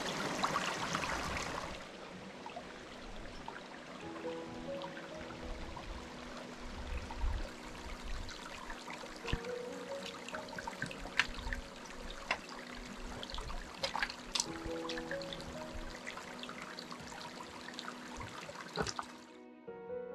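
A shallow stream running over rocks, close and loud for the first two seconds, then quieter under soft background music. Scattered sharp clicks of boots and trekking poles on the stones come through the middle. Near the end the water sound cuts off, leaving only the music.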